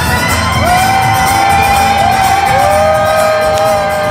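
Live fiddle solo: long sustained violin notes, each slid up into pitch, with a second lower note entering about two and a half seconds in and ringing together with the first, over a low band accompaniment.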